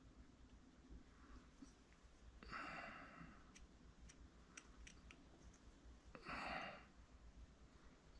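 Near silence, broken by two soft exhaled breaths, one about two and a half seconds in and one about six seconds in, with a few faint clicks between them.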